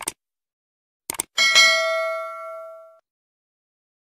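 Subscribe-button animation sound effects: a click, then two quick clicks about a second in, followed by a bell ding that rings out and fades over about a second and a half.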